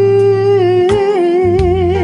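A woman singing a gospel song, holding one long note that starts steady and takes on a wavering vibrato about a second in, over a sustained musical accompaniment.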